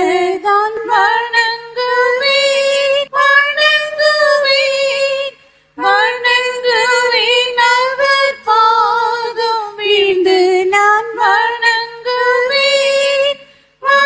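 A woman singing unaccompanied: one high voice in long, held phrases, breaking off briefly about five seconds in and again near the end.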